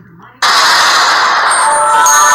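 Production-logo music starting with a sudden loud crash of noise about half a second in. Sustained synthesizer tones come in under it near the end.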